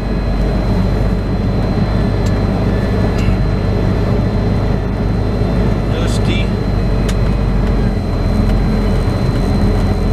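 Semi truck's diesel engine running at low speed, heard from inside the cab as a steady low rumble while the truck creeps and turns through a yard.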